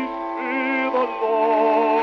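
Male vocal quartet singing a hymn in harmony, holding chords with vibrato, heard through a 1904 acoustic 78 rpm recording with no deep bass.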